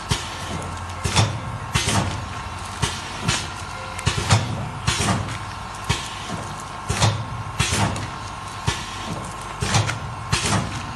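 Automatic liquid sachet filling and sealing machine running, a steady hum broken by sharp clacks about once or twice a second as it cycles.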